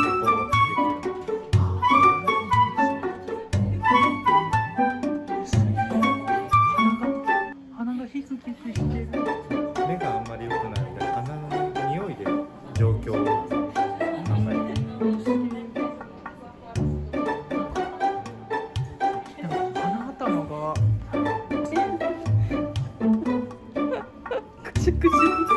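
Background instrumental music: plucked double bass under quick string notes.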